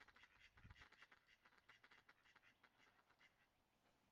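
Faint, rapid quacking from mallard ducks, fading away near the end.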